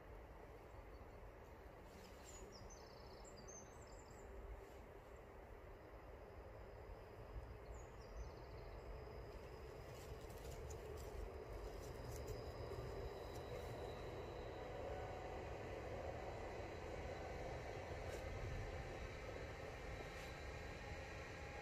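Quiet outdoor ambience: a steady low rumble, with a few faint bird chirps about two to four seconds in and again around eight seconds.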